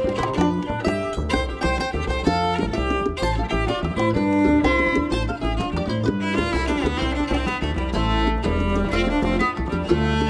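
Live acoustic string-band instrumental: bowed cello, plucked upright bass and mandolin, with hand drums (bongos) keeping a steady beat.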